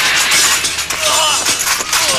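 Glass panes of a double door shattering as a man is thrown through them. Broken glass and debris crash and clatter down stone steps in a long run of sharp crackling and clinks.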